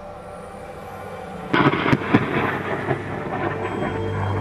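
Thunder from a very close lightning strike to an antenna mast: a sudden sharp crack about a second and a half in, a few more cracks in the next half second, then a rumble that carries on.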